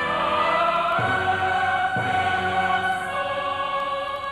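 Classical choral music: a choir singing long held notes, with the chord changing about one and two seconds in.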